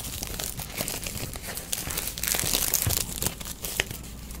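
Clear plastic shrink wrap crinkling and tearing as it is peeled off a new sketchbook, a dense run of small crackles.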